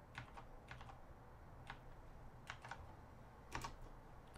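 Faint, irregular keystrokes on a computer keyboard: a handful of separate clicks, with a quick cluster near the end.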